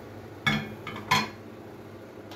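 A wooden spoon knocks twice against a thin stainless steel pot while stirring diced squash into a chicken stew. The two sharp clinks come about two-thirds of a second apart.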